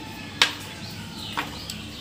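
A short, sharp click about half a second in and a softer click about a second later, over low background noise.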